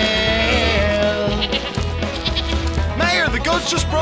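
Goats bleating several times, the calls clustering near the end, over country-style background music.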